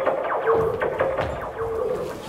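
Electronic sound effect played over the hall's speakers: a quick run of short chirping, falling bleeps over a held tone, the sound of a radio signal coming in.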